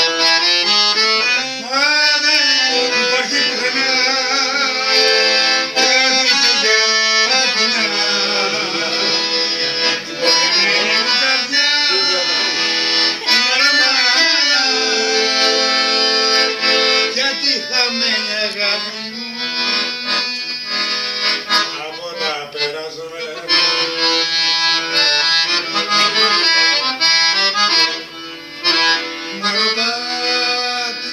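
A piano accordion playing a tune steadily throughout, with a man singing along over it at intervals.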